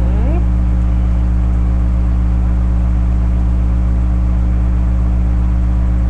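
A loud, steady low hum with several evenly spaced overtones that never changes in pitch or level.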